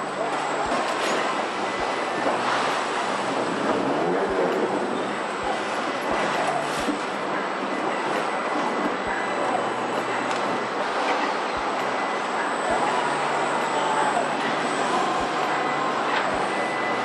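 Continuous machinery noise of a car assembly plant, with squeals that glide up and down several times and short low knocks about once a second.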